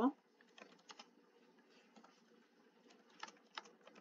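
Computer keyboard being typed on: faint, irregular key clicks as a sentence is typed out.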